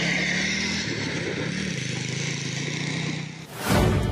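Small motorcycle engine running, its pitch rising and falling slightly, over a steady hiss. Near the end a loud whoosh cuts in as a news title sting begins.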